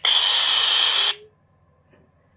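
A radio speaker lets out a loud rush of static for about a second, then cuts off abruptly: a UV-K5-type handheld picking up a CB handheld keyed to transmit right beside it.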